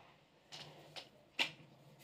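Mostly quiet room tone, with a few faint brushes and a short sharp rustle about one and a half seconds in, from hands working through long hair.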